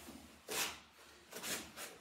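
Quiet movement noises from two people working with wooden training weapons: three short, soft swishes with no sharp knock of wood on wood.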